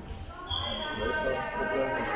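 Indoor handball being played in a reverberant sports hall: players calling out, a handball bouncing on the court floor and brief high-pitched squeaks.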